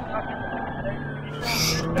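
Engine and road noise inside a police VW Golf R in pursuit at speed, with a thin whine that slowly falls in pitch and a brief hiss about one and a half seconds in.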